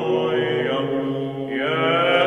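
Background music of chanting voices: long sung notes over a steady low held drone note.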